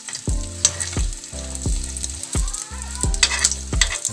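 Egg frying and sizzling in a metal wok over a gas flame, with a metal spoon scraping and pushing it around the pan.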